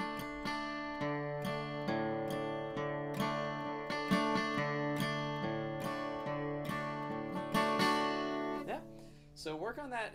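Steel-string acoustic guitar strummed in bluegrass rhythm, with quick up-down-up flourish strums aimed at the higher strings. The chords change a few times. The playing stops just before the end.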